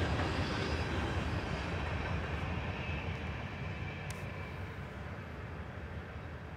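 Rumble and wheel noise of a freight train's last cars, covered hoppers among them, rolling past, fading steadily as the end of the train moves away.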